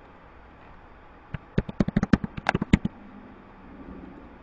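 Computer keyboard keys clicking in a quick run of about a dozen keystrokes, starting just over a second in and stopping just before three seconds, as a password is typed.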